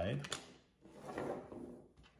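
A folding utility knife set down on a wooden tabletop: a light knock, then a faint scrape as it is slid aside.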